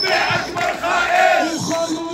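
Protest chanting: shouted voices calling out a slogan in a rhythmic chant.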